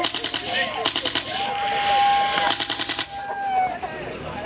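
Three short bursts of rapid sharp clicks, like a fast rattle. Through the middle a single long high note is held for about two and a half seconds.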